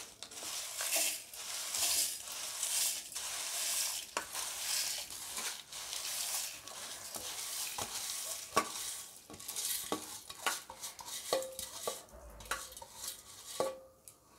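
Dry roasted lentils, red chillies and curry leaves poured from a steel plate into a stainless-steel mixer-grinder jar: a rustling, hissing pour of dry grains for the first several seconds. Then come scattered clinks and taps of steel on steel, some briefly ringing, as the last bits are pushed in.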